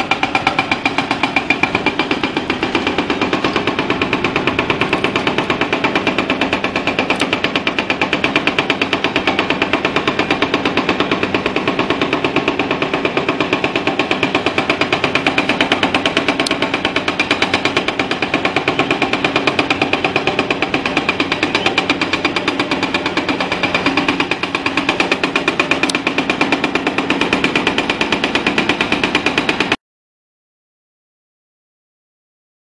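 Excavator-mounted hydraulic breaker hammering rock, a rapid, steady run of blows that cuts off suddenly just before the end.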